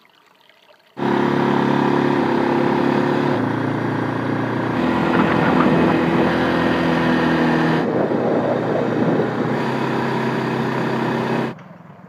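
ATV engine running at a steady speed, cutting in suddenly about a second in and dropping away just before the end, its pitch shifting in steps a few times.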